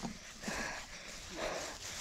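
A boy panting hard, about three heavy, noisy breaths out of breath after running.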